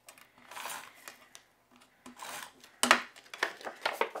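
Adhesive tape runner drawn across the back of a sheet of paper in two short strokes, then a sharp paper-handling noise as the card stock is picked up near the end.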